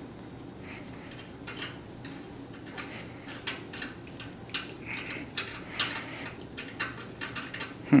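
Irregular light metallic clicks and rattles, sparse at first and busier in the second half, from the wire terminals and metal pan of a GE glass-top range's radiant surface element being wiggled and tugged. The push-on connectors are stuck tight.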